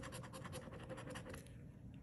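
A coin scratching the coating off a paper scratch-off lottery ticket in quick, rapid strokes. The strokes stop about a second and a half in.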